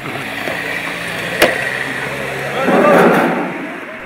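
Road traffic: car engines running at close range, with one vehicle growing louder as it passes about three seconds in, and a single sharp click about a second and a half in.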